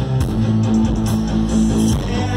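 A live rock band playing loudly: electric guitar over sustained bass notes, with drums and cymbals striking at a regular beat.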